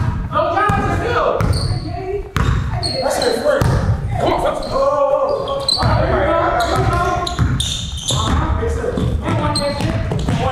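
A basketball dribbled on a hardwood gym floor, bouncing again and again, mixed with players' voices echoing in a large gymnasium.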